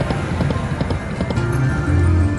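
Dancing Drums video slot machine playing its game music, with a rapid run of clicks from the reel-spin effects as a spin plays out.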